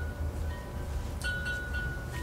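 Wind chimes ringing: a few metal tones hold and fade, with a fresh strike a little past halfway, over a low steady rumble.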